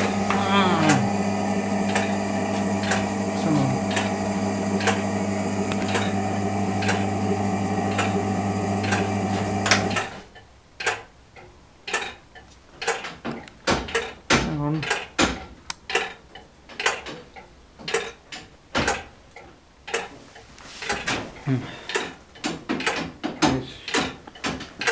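The electric winding motor of a church turret clock hums steadily, then cuts off suddenly about ten seconds in. After that the clock mechanism gives irregular light clicks and knocks, one or two a second.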